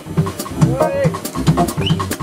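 Live jazz: electric bass and drum kit playing a steady groove, with cymbal and drum hits ticking through it. About half a second in, a short tone rises and falls over the band.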